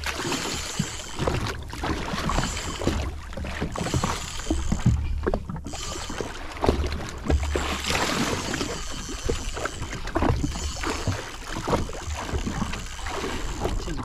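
Sea water lapping and slapping irregularly against the hull of a drifting jet ski, with gusts of wind rumbling on the microphone.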